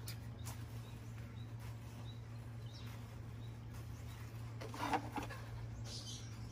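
Quiet background: a steady low hum with faint, scattered bird chirps and a few light clicks.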